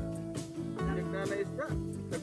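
Background music with a steady beat and held chords, with short gliding notes over it.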